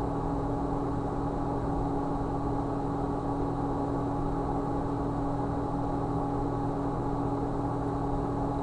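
Steady background hum with several constant tones, the loudest a low one, unchanging throughout.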